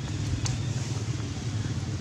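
Steady low engine rumble, with a single sharp click about half a second in.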